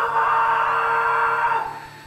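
A sudden loud yell, held on one pitch for about a second and a half before it fades, over background music.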